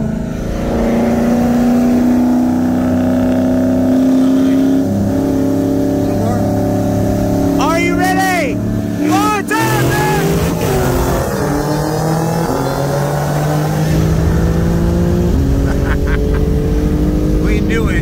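2022 BMW M3 Competition's twin-turbo inline-six at full throttle, heard from inside the cabin, revs climbing steadily through each gear with the pitch stepping down at upshifts about every five seconds. A voice exclaims briefly about eight seconds in.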